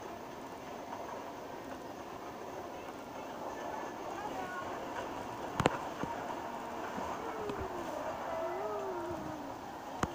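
Steady running noise of a small ride train, heard played back through a phone's speaker, with one sharp click a little past halfway and a few faint wavering pitched sounds near the end.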